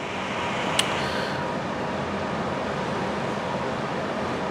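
A lighter clicks once, then its flame gives a steady hiss while a cigar is being lit.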